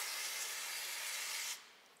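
Aerosol brake-cleaner can spraying in one continuous hiss that cuts off about one and a half seconds in, rinsing oil off a scooter engine's oil strainer screen.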